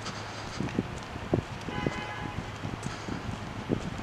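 Steady low hum of outdoor traffic and idling vehicles, with scattered soft low thumps from a handheld camera being moved, and a brief faint horn-like tone about two seconds in.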